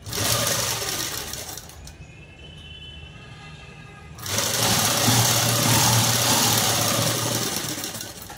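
Ruby sewing machine stitching fabric in two runs: a short burst of about two seconds at the start, then a longer steady run from about four seconds in until near the end.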